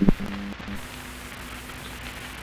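Analog television static: a steady hiss with a low hum under it, starting with a sudden click.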